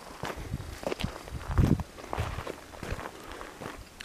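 Footsteps walking over dry gravel and brush: an uneven series of steps, the loudest about a second and a half in.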